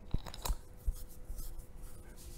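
Two sharp clicks about a third of a second apart, like computer mouse clicks, then a softer knock and faint room noise with a thin steady hum.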